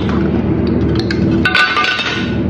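Small handling clicks, then a sharper clink with a brief ring about one and a half seconds in: small hard objects knocking together.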